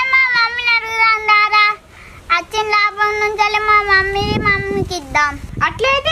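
A child singing in long, drawn-out held notes: two sustained phrases with a short break about two seconds in, then a quicker vocal flourish near the end.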